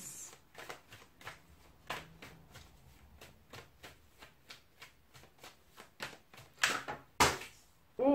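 A deck of tarot cards being shuffled by hand: a quick run of soft card clicks, with a few louder card strokes near the end as a card flies out of the deck.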